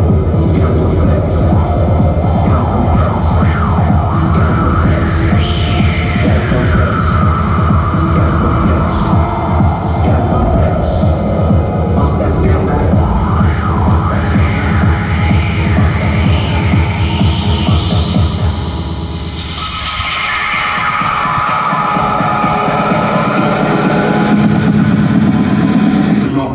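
Electronic dance music from a live DJ set, played loud over a club sound system, with a steady heavy bass beat and sweeping filtered sounds rising and falling. About three-quarters through the bass drops out for a short breakdown, and the beat comes back near the end.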